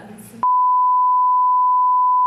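Broadcast test tone: the steady, pure, high-pitched reference beep that goes with colour bars. It cuts in abruptly about half a second in and holds at one pitch, the sign of a programme knocked off the air by technical difficulties.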